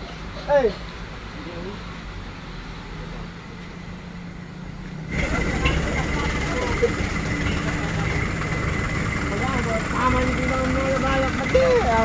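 Truck engine idling with a steady low hum. About five seconds in, the sound cuts to a louder, rougher idling rumble, with voices talking over it.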